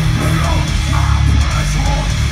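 Industrial metal band playing live at full volume: distorted electric guitars, bass and drums.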